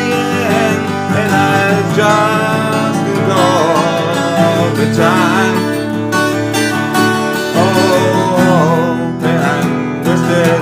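Chatelier twelve-string acoustic guitar being played, chords and melody notes ringing together in a steady instrumental passage.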